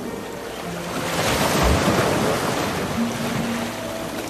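A large clear plastic sheet billowing through the air right by the microphone: a swelling whoosh of rustling plastic and rushing air that builds about a second in, peaks, and dies away near the end, with a brief low bump of air in the middle.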